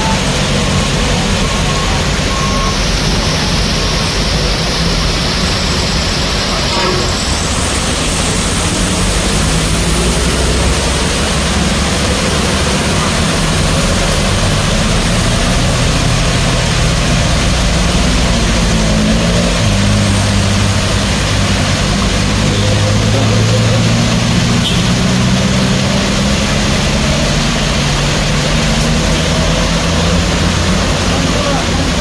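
Heavy rain and running water hissing steadily on a wet road, with the engines of cars, motorbikes and a minibus running as they climb past. A deeper engine hum grows louder in the second half.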